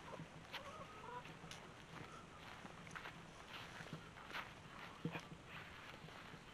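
Faint footsteps on dry, straw-covered ground, an irregular crunch about once or twice a second, with a few short faint bird calls.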